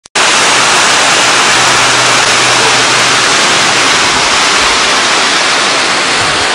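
Loud, steady rushing of a waterfall, an even hiss with no let-up.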